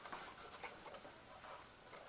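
Faint, light clicks of small plastic parts and packaging being handled, a few scattered ticks at irregular times.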